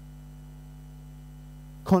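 Steady electrical mains hum: a low buzz of several held tones at a constant level.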